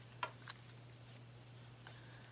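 Faint handling sounds of gloved fingers pressing potting mix around a small potted plant: two short light clicks about a quarter-second apart near the start and a fainter one near the end, over a steady low hum.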